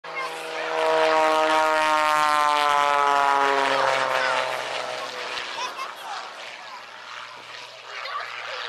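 Aerobatic propeller plane's engine passing by, its drone sliding down in pitch as it goes past, then fading away after about four seconds.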